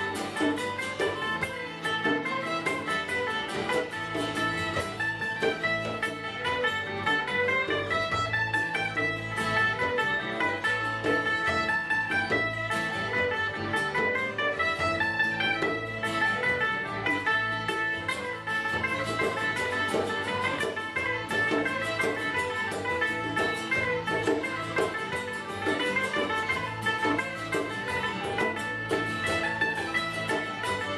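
Live folk band playing an instrumental passage: acoustic guitar and a second guitar under a high, stepping melody line.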